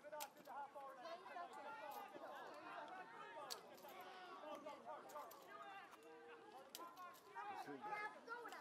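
Faint, indistinct overlapping voices of several people talking, with a few short sharp clicks.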